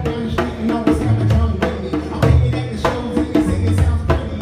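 Live amplified music from an orchestra with a pop band, a steady beat and a strong bass line under sustained orchestral notes.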